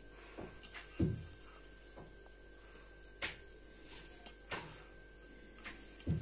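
Faint, scattered clicks and knocks of a ladle and utensils against an aluminium cooking pot, with a duller thump about a second in.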